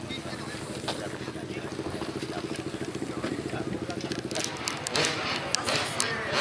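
A motorcycle engine running steadily with a fast, even beat, which gives way to people's voices and a few clicks near the end.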